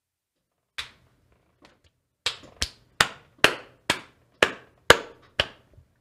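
A run of about ten sharp knocks on a hard surface, each with a short ring, settling into an even beat of about two a second before stopping.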